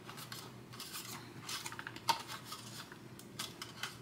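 Light clicks and rubbing of a hard plastic toy pickup body being handled and turned in the hands, with a faint steady hum beneath.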